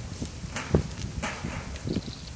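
Handling noise from picture cards being swapped: a few soft, irregular taps and brief rustles over a low rumble.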